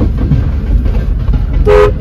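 Low, steady rumble of a car moving slowly, heard from inside the cabin, with one short two-tone car horn beep near the end.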